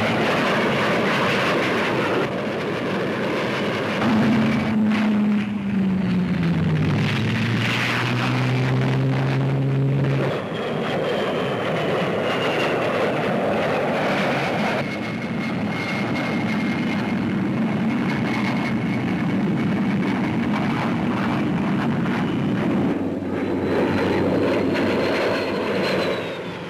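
De Havilland Vampire jet fighter in flight, a steady rushing engine noise throughout. A drone drops in pitch about four to ten seconds in as the aircraft passes, and a faint high whine sits over the noise through the second half.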